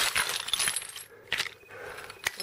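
Broken pieces of ceramic floor tile clinking and clattering as they are handled: a quick run of sharp clinks, with another loud one about a second and a half in.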